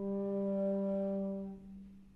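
A trombone plays one held low note that fades away about a second and a half in.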